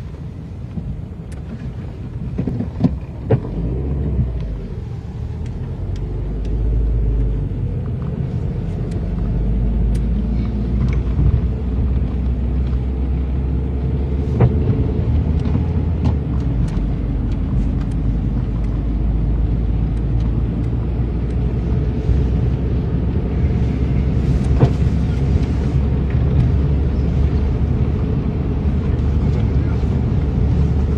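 Car driving on a snow-covered road, heard from inside the cabin: a steady low rumble of engine and tyres that builds over the first several seconds and then holds. Scattered light clicks and knocks punctuate it, the loudest about three seconds in.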